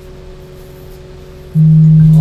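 A steady low hum, then about one and a half seconds in a loud, steady low buzz starts and holds.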